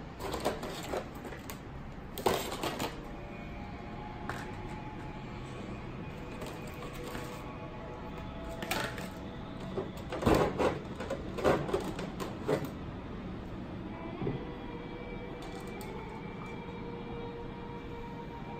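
Clear plastic blister packaging crinkling and clicking as action-figure accessories are handled and taken out, in several short bursts with the loudest cluster about two-thirds of the way in. Faint steady tones run underneath.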